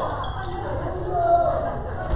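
Table tennis balls knocking on tables and bats during rallies at several tables, with people talking in the background.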